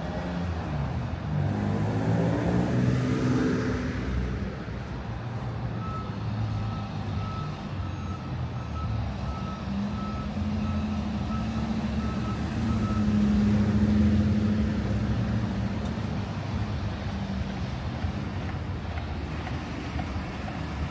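Street traffic: a vehicle drives past in the first few seconds, then a reversing alarm beeps steadily at about two beeps a second for some five seconds, over running engines. A heavier engine drones louder a little past the middle.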